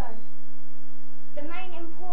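A steady electrical hum, one unchanging buzzy tone, with a boy's voice coming in about one and a half seconds in.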